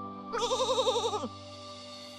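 A sheep's bleat used as a sound effect: one wavering "baa" about a second long, dropping in pitch at its end, over soft background music.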